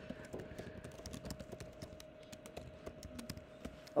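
Typing on a computer keyboard: a quick, irregular run of light key clicks as terminal commands are entered. A faint steady hum lies underneath.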